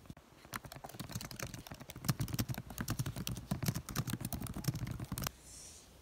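Fast typing on a laptop keyboard: a dense, unbroken run of key clicks that stops suddenly about five seconds in.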